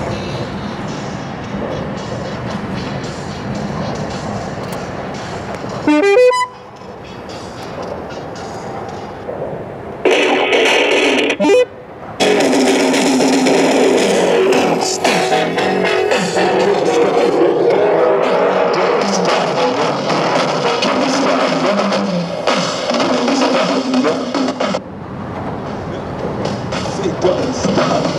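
Recorded music playing from a JVC RC-838JW boombox, fed over Bluetooth from a laptop through a Bluetooth cassette adapter in its tape deck. The music breaks off and changes abruptly a few times.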